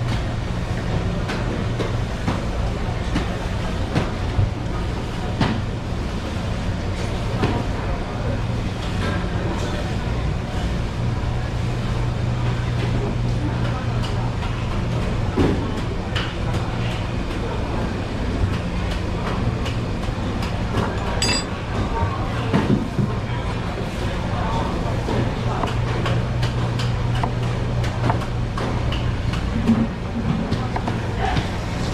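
A steady low machine hum of kitchen appliances, with scattered clinks and knocks of work at the sink and counter.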